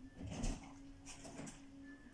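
Faint rustling and a few light clicks of a small plastic puzzle cube's pieces being handled while someone tries to fit the last part on, over a thin steady low hum.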